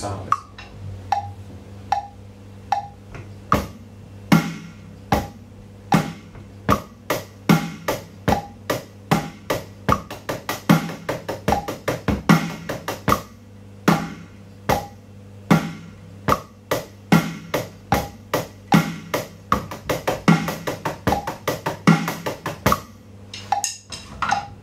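Electronic drum kit playing a basic groove over a metronome click: bass drum on one and three, snare on two and four, with the hi-hat stepping up a bar at a time from quarter notes to eighth notes to sixteenth notes. The click ticks on its own at about 75 BPM for the first three and a half seconds before the kit comes in.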